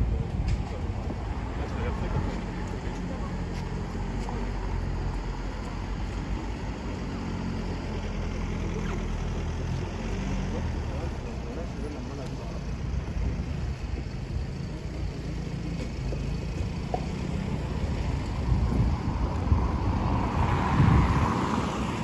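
City street ambience: a steady low rumble of traffic and engines with faint voices. The noise swells louder near the end.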